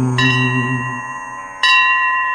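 A bell in a devotional hymn's accompaniment, struck twice about a second and a half apart, each strike ringing on in clear high tones. A low held note fades out beneath the first strike.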